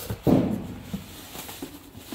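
Things being handled and shifted inside a cardboard box of wrapped items: a short, loud handling thump about a quarter second in, then fainter rustling and light knocks.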